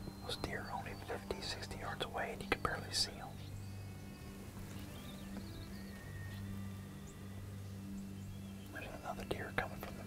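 Hushed whispering for the first three seconds and again near the end, over a steady low hum. Faint background music runs underneath.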